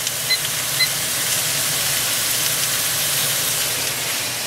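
Ground beef frying in a pan on the stove, a steady sizzle with a low hum underneath and two faint clinks in the first second.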